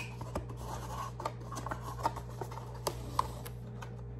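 Cardboard packaging being handled: light rustling with scattered sharp clicks and taps as a folded card is opened and held up.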